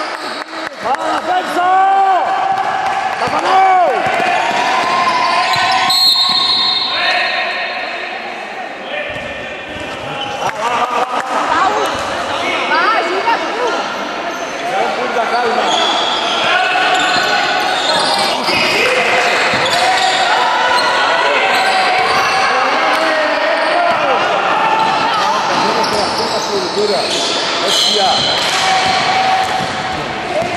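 Sounds of a basketball game in a large hall: the ball bouncing on the court, with voices calling out over it and the hall's echo.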